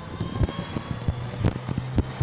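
Street background noise: a low, steady vehicle-engine hum comes in about a second in, over rumbling and bumps on a handheld phone's microphone.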